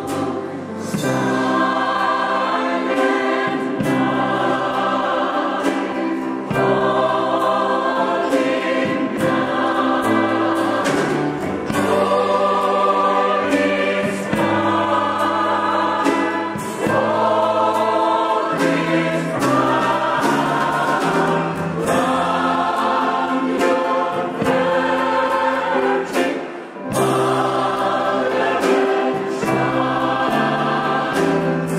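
A large mixed choir of men and women singing together in harmony.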